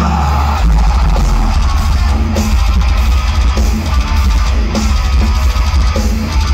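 Deathcore band playing live through a festival PA, heard from the crowd: heavy distorted guitars and pounding drums, loud and bass-heavy, with little singing in this stretch.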